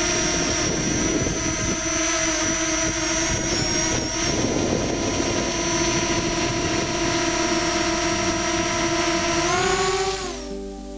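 JJRC X12 quadcopter drone hovering close by, its four propellers giving a steady whine. The pitch rises near the end as the motors speed up.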